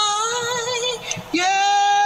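A solo singing voice holding long, drawn-out notes. It breaks off briefly about a second in, then comes back on a long held note.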